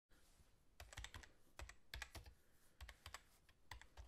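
Faint computer keyboard typing: short runs of a few keystrokes each, with brief pauses between the runs.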